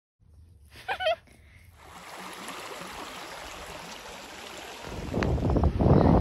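Wind on the microphone: a steady rushing noise that becomes a loud low rumbling buffet about five seconds in.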